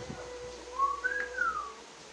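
Whistling: a steady held tone, with a short whistled phrase about a second in, a brief note followed by a higher one that slides down.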